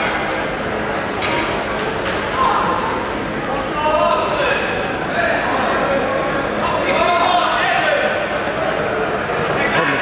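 Overlapping voices of spectators and coaches talking and calling out, echoing in a large sports hall.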